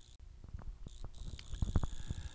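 A run of faint, short clicks that come quicker toward the end.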